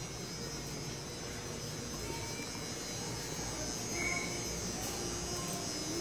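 Steady low hum of a shop's indoor background, with a few faint brief tones.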